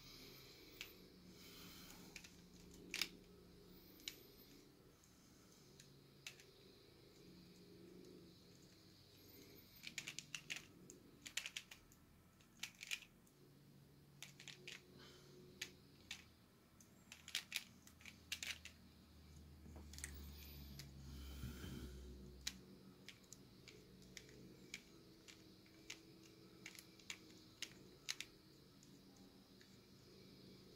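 Plastic Pyraminx puzzle being turned by hand: quiet, scattered clicks of its pieces, with quicker runs of clicks about ten and eighteen seconds in.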